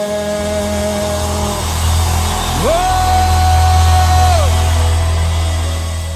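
The closing bars of a Brazilian worship song: a long held note over a sustained low bass chord, a second held note sliding in about halfway through, then the music fading out near the end.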